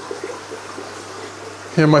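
Steady water trickle and bubbling from the tanks' air-driven sponge filters, over a low steady hum.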